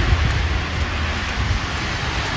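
Steady hiss of car tyres on a wet, slushy road, with a low, unsteady rumble underneath.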